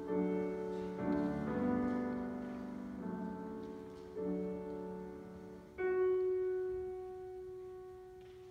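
Grand piano playing the slow introduction to an opera aria: a series of held chords, each left to ring, then about six seconds in a single note struck and left to fade out.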